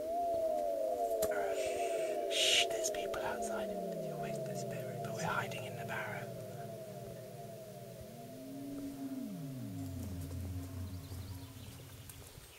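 Eerie synthesized sound effect: overlapping tones that glide downward over and over without end, with a second, lower layer of falling tones joining about three seconds in and again near eight seconds.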